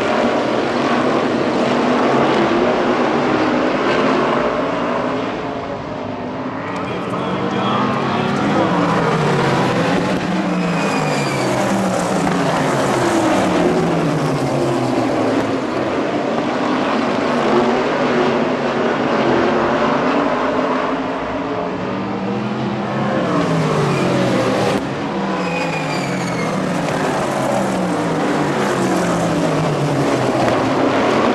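Several sprint car engines racing together, their pitches rising and falling as the cars accelerate out of the turns and lift into them. The sound swells as the pack passes close and dips twice as it runs the far side.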